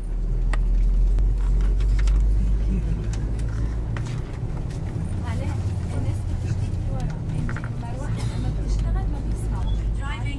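Steady low rumble of a moving tour bus's engine and road noise heard from inside the cabin, loudest in the first few seconds, with faint voices of passengers talking from about halfway.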